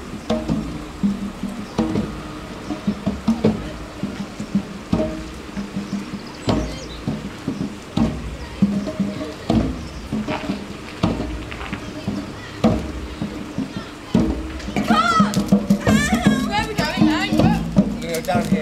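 Music with sustained low notes and a slow, steady beat. Wavering high voices come in about fourteen seconds in.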